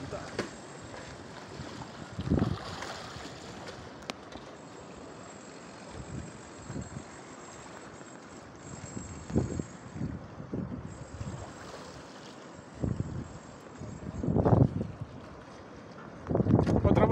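Wind buffeting the phone's microphone in gusts every few seconds over a steady outdoor hiss of wind and sea.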